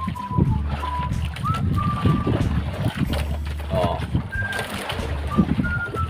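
Steady low drone of a boat's motor with water splashing, and a few short, clear high notes scattered through it.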